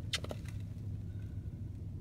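2014 Ford Escape's engine idling, a steady low hum heard inside the cabin, with a few quick clicks just after the start.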